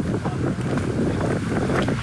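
Wind buffeting the microphone, a loud, continuous low rumble.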